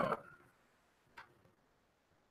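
The tail of a man's "uh", then a quiet room broken by a single faint click about a second in.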